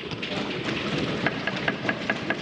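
Many members thumping their wooden desks in approval, a dense clatter of hands on desks, with distinct sharp thumps at about seven a second from about a second in.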